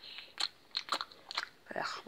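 A few quiet, sharp mouth clicks and lip smacks from a mouth that feels odd just after waking, followed near the end by a groaned 'ugh'.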